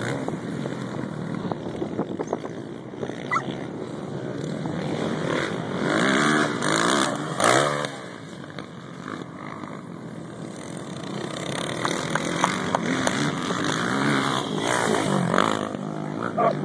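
Four-stroke 450cc motocross bikes racing, their engines revving up and down. One bike is loudest about six to eight seconds in as it passes close, then drops away abruptly; the engine sound builds again later as more bikes come round.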